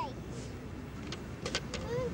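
Low rumbling wind noise on the microphone with faint sea surf behind it, broken by a few short sharp clicks about one and a half seconds in.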